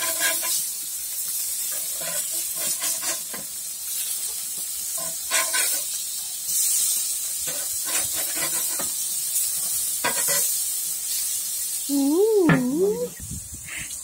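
Hamburger patties sizzling on a gas barbecue grill plate as they are flipped with tongs, with scattered light clicks and scrapes of the tongs on the grate. Near the end a voice says "ooh".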